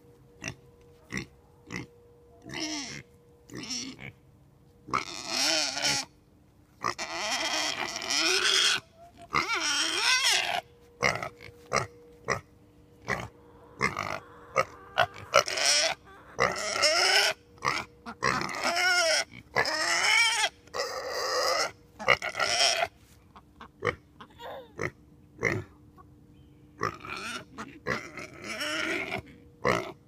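Ducks quacking in irregular loud bouts, some running over a second, with short single quacks in between.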